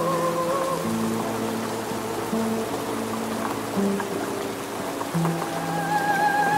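Slow music: a high wavering tone with heavy vibrato fades out about a second in, sustained low notes shift through the middle, and the wavering tone returns higher at the end. A steady hiss of rain runs underneath.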